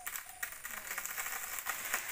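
Faint rustling of leaves and light cracking of twigs in a star apple tree as a climber moves among the branches, with a few soft clicks.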